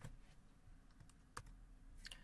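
Near silence with a few faint clicks from computer input. The sharpest comes just under a second and a half in.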